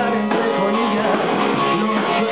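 Live rock and roll band playing loudly and steadily, with electric guitar, electric bass and drums.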